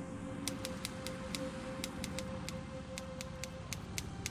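A steady low drone with a single held tone over it, sprinkled with irregular short clicks. The held tone fades out near the end.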